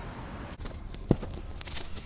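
Irregular light clicking and rattling, with one dull thump about a second in, after a faint steady hiss.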